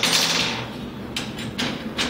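Metal mounting hardware being fitted by hand on a linear actuator slider rail: a short scraping slide at the start, then two light knocks about a second in.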